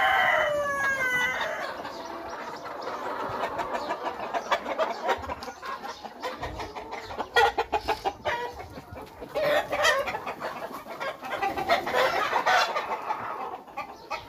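A shed full of three-month-old Sonali crossbred chickens clucking and calling over one another. A long call slides down in pitch at the start, and the din swells in louder bursts a little past the middle and again near the end.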